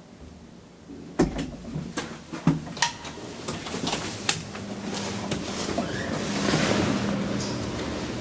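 Elevator car at a stop: a run of sharp clicks and knocks, one as a button on the car panel is pressed. Then a steady hum and a rising rushing noise over a couple of seconds as the doors open.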